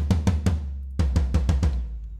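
Sampled floor tom from a GetGood Drums virtual kit hit in a quick run of repeated strokes, then a second run about a second in, each stroke ringing low. These are test hits to check that the tom plays through its own routed track.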